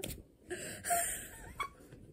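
A woman's stifled laughter behind the hand covering her mouth, with a mouthful of pizza: breathy, wheezing gasps with a few short squeaks.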